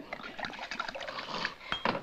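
Liquid pouring from a glass bottle into a metal cocktail shaker, with glassware clinking and one sharp clink near the end.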